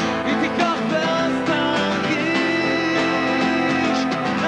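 Live rock band playing: a singer with acoustic guitar, backed by bass guitar and drums, with one long held note around the middle.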